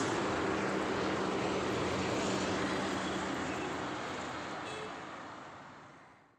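Steady vehicle and road traffic noise with a low engine hum, fading out over the last two seconds.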